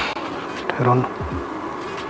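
Insect-like buzzing that recurs about every two seconds, the loudest buzz coming about a second in, over a steady background hum.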